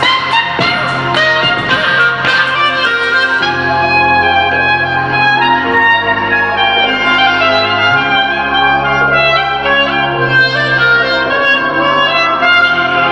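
Clarinet playing a melody live over a hip-hop trap backing track, whose deep bass notes change every couple of seconds. Sharp beat clicks are prominent for the first few seconds, after which the clarinet and bass carry on.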